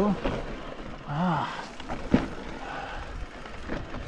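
Mountain bike riding over a rocky trail: a steady low rumble of tyres and wind, with one sharp knock about two seconds in. The rider's voice is heard briefly about a second in.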